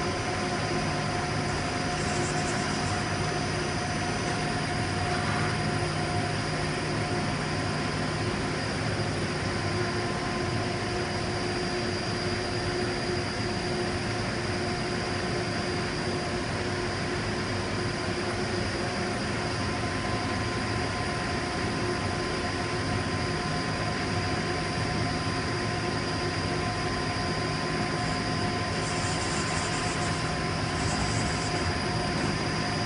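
Steady machine hum with several constant whining tones: a Daewoo Puma 200MS CNC turn-mill center running its C axis, with a shop air compressor running underneath.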